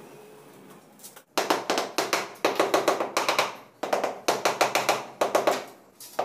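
Ceramic wall tiles being tapped rapidly with a hand mallet to bed them into the adhesive: quick runs of sharp taps in several bursts, starting a little over a second in.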